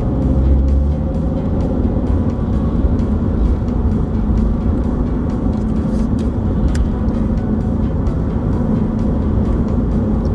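Car being driven, heard from inside the cabin: a steady low rumble of engine and road noise with a constant hum.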